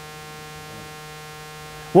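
Steady electrical hum, a few held tones that do not change.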